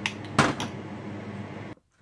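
A metal spoon clinking against a glass measuring cup twice in the first half-second while stirring a butter sauce, over a low steady hum; the sound drops out briefly near the end.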